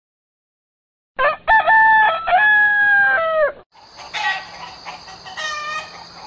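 A rooster crowing once, starting about a second in: one long call that rises, holds and falls off. Quieter mixed sounds with a thin steady high whistle follow.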